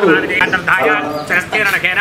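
Hindu priest chanting Sanskrit Vedic mantras aloud in a steady run of voice.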